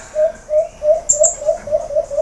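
A dove calling a fast run of short, even notes, about four or five a second, with a few brief high chirps from another bird about a second in.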